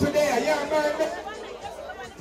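Speech only: a man talking into a handheld microphone, with chatter from the people around.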